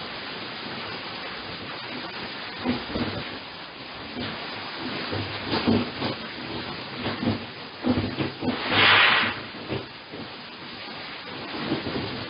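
Balcony shaking in an earthquake, heard through a security camera's microphone: a steady hiss with scattered knocks and rattles. A louder hissing burst lasts about a second, near nine seconds in.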